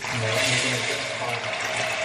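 Dried green pulses pouring from a plastic bag into a metal cooking pot: a steady rushing rattle of small hard grains hitting the pot.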